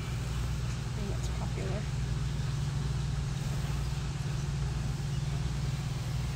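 Steady low hum under a haze of background noise, with faint indistinct voices about one to two seconds in.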